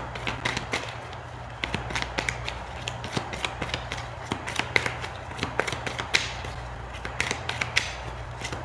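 A deck of tarot cards being shuffled by hand, the cards flicking and slapping against each other in quick, irregular clicks, over a steady low hum.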